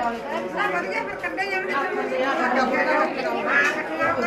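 A group of women chattering, many voices overlapping at once.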